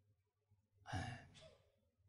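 A single short breath, like a sigh, close to a handheld microphone about a second in, with near silence on either side.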